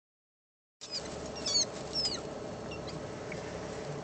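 A few short, high-pitched squeaks from a small animal, each falling in pitch, the loudest two about a second and a half and two seconds in, over a steady low hum that starts just under a second in.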